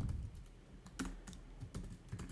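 Keystrokes on a computer keyboard: a run of separate key clicks as a word is typed, with one sharper click about halfway through.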